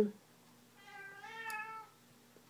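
A domestic cat meowing once: a single drawn-out call about a second long, starting just before the middle.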